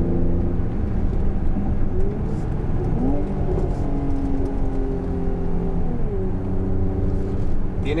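The Mercedes-AMG 43's 3.0-litre twin-turbo V6, heard from inside the cabin while driving: a steady engine drone. Its pitch sweeps up about three seconds in and steps down again around six seconds in.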